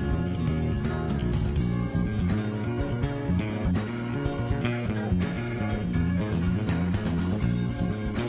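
Live band playing an instrumental jam, with an electric bass guitar carrying a prominent, busy bass line over drums and guitar.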